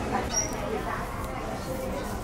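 Indistinct voices murmuring in the background, with one brief high squeak about a third of a second in.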